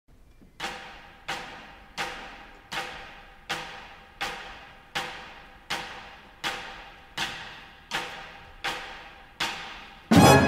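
A single orchestral percussion instrument struck in a steady, even pulse: about thirteen sharp strikes, roughly three-quarters of a second apart, each ringing briefly and fading before the next.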